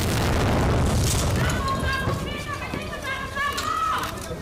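A tear gas shell going off on the road with a sudden loud boom that trails off over about a second and a half, followed by high-pitched shouting.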